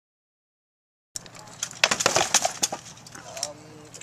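Silence for about a second, then a quick flurry of sharp strikes from rattan swords hitting shields and armour in armoured combat, loudest near the middle, followed by a faint voice.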